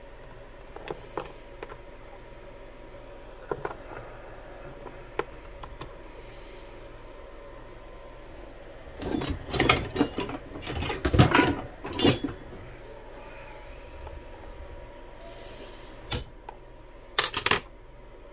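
Small metal clicks and clinks of a Traxxas 380 brushless motor being handled and taken apart on a steel bench and vise, with a busier run of clattering about nine to twelve seconds in and a few sharp clicks near the end.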